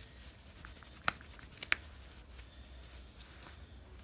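Faint rubbing of a polishing cloth over a small stabilized-wood pot held in gloved hands, with two sharp clicks about a second in and again just over half a second later. A low steady hum sits underneath.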